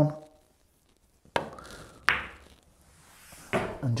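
Pool balls: a soft click of the cue tip striking the cue ball, then about a second later a second click as the cue ball meets the nine ball, a gently rolled stroke that just rolls the nine in.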